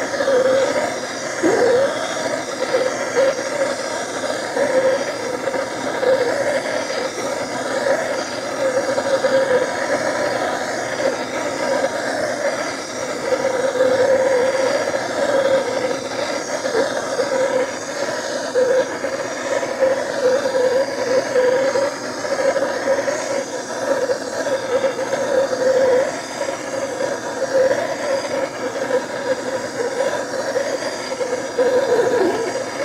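Hand gas torch burning steadily, a continuous hiss with a wavering rumble in it, as its flame heats the aluminum crankcase around a bearing bore so the bearing will go in more easily.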